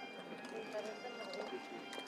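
Footsteps of several people walking on stone paving, with soft shoe clicks, over quiet murmuring voices.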